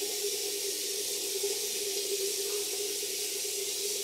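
Bathroom sink tap running steadily: an even hiss of water with a constant low hum beneath it.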